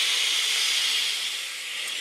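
Steam iron hissing steadily as it presses a tailored waistcoat's collar and lapel, easing off near the end.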